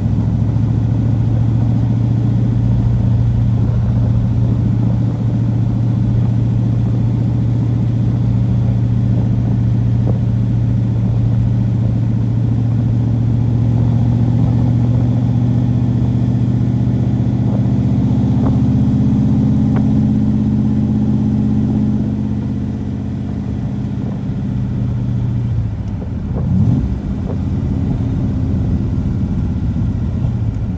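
A 1974 Chevrolet Corvette's V8 engine running steadily on the road, heard from the open cockpit with the top off. Near the end the engine note drops for a few seconds, with a short rise and fall in pitch, before steady running picks up again.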